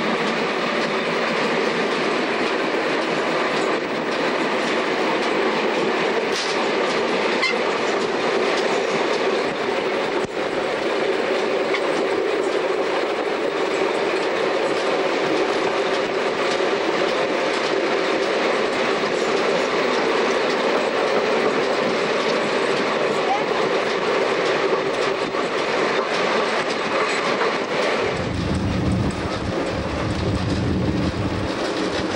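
Historic passenger train running on the line, heard from the open end platform of a coach: a steady, even rumble of wheels on the track, with the occasional faint knock. Near the end the sound turns deeper and boomier.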